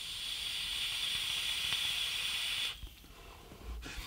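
A long drag on a Footoon Hellixer rebuildable tank atomizer: a steady hiss of air drawn through its airflow and over the firing coils. It lasts nearly three seconds, then stops.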